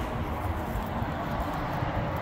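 Steady low rumbling outdoor background noise with no distinct event.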